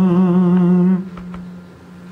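A man's singing voice holds one long note with vibrato, then stops about halfway through, leaving a quieter steady tone lingering.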